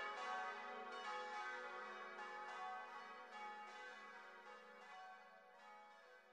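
Church bells ringing, a run of overlapping strikes every half second or so with long ringing tones, fading away steadily.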